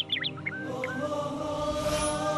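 Intro music: a few quick bird chirps in the first half second, then a slow vocal chant with long, slowly wavering held notes takes over.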